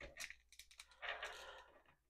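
Faint handling sounds of a plastic action figure being posed by hand: a few small clicks of its joints at the start, then a brief soft rubbing of plastic against skin.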